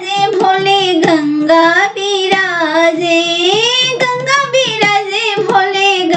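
A high voice singing a Bhojpuri folk song to Shiva (a Shiv vivah geet) in a long melismatic line, with sharp percussive strikes about once a second.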